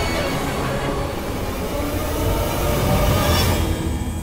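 Dramatic TV soundtrack effects: a dense rumbling roar under the background score, swelling into a whoosh about three seconds in before fading.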